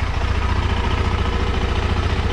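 KTM 390 Adventure's single-cylinder engine idling steadily, a fast even low pulse with no change in speed.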